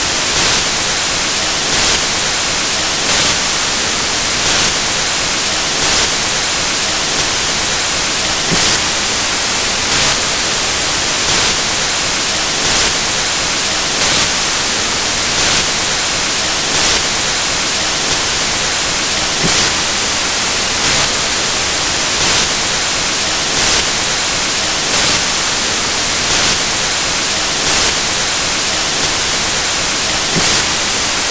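Loud, steady static hiss from the recording, with a faint regular swell a little less than every second and a half and no voice audible under it.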